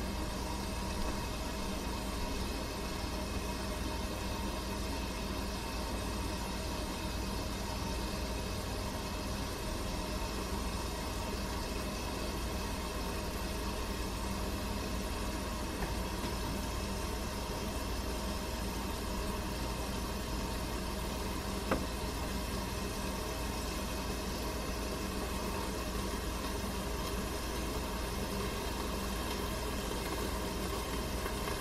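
Steady machine hum with hiss, unchanging throughout, broken once by a short sharp click a little past the middle.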